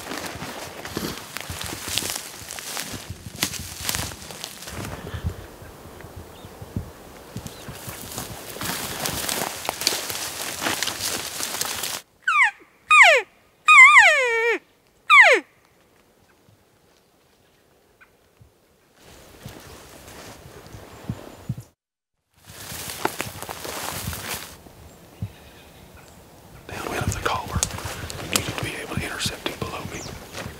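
Footsteps rustling through dry brush and grass, then, about twelve seconds in, an elk calling: four short high-pitched calls over about three seconds, each sliding down in pitch.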